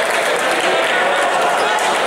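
Indoor sports-hall crowd applauding and cheering, a loud steady wash of clapping and many voices.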